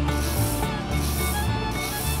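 Sand rasping in a small crank-driven toy sieve as it is shaken back and forth in repeated strokes, with kidney beans sliding off its chute into a woven bamboo basket.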